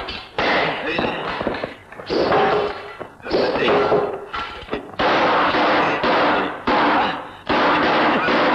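Dubbed fight-scene soundtrack: a string of yells and shouts mixed with hits and weapon clashes, coming in loud bursts about once a second.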